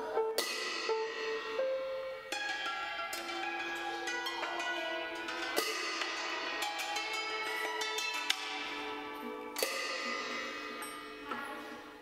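A pair of small brass hand cymbals struck three times, about four to five seconds apart, each stroke ringing on and shimmering as it fades, over sustained lower instrument tones.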